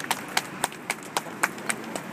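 Sparse applause from a small street audience, the claps coming sharply at about four a second.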